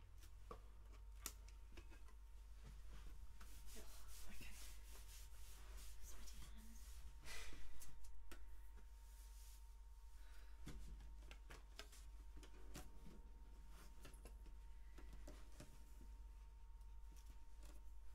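Faint handling noise at a music stand: rustling and rubbing with scattered light clicks, one louder rustle about halfway through, no harp notes. A steady low electrical hum runs underneath.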